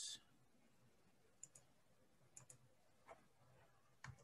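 Faint computer mouse clicks in near silence: two quick double clicks, then a single click.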